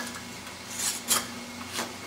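Metal lid band being screwed down by hand through a cloth onto a filled glass mason jar to seal it: a few short scraping rubs of metal thread on glass.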